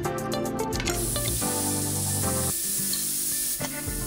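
Aluminium pressure cooker letting out steam as its weight is lifted with a spoon: a steady high hiss that starts about a second in and fades near the end, over background music.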